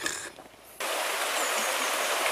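Shallow stream running over stones: a steady rush of water that starts abruptly just under a second in.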